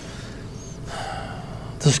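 A man's audible in-breath, close on a clip-on microphone, in a short pause in his speech; his voice comes back in right at the end.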